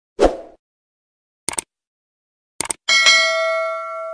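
Subscribe-button animation sound effects: a short swish, then two quick double clicks, then a notification bell ding that rings out with several steady tones.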